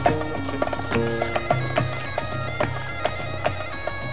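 Celtic-medieval style instrumental music: a steady low drone under held reed-like melody notes, with evenly repeated percussion strikes.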